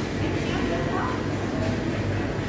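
Indoor market hall ambience: a steady low hum with indistinct voices in the background.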